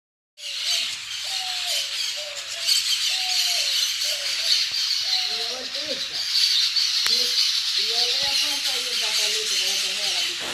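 A flock of parakeets chattering and screeching continuously, a dense wash of high calls throughout.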